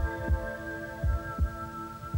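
Heartbeat sound effect: slow, low thumps repeating under a steady, held synthesizer chord.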